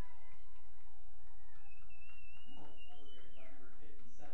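Steady low rumble of open-field ambience. Faint, distant voices from the field and sidelines come in about two and a half seconds in.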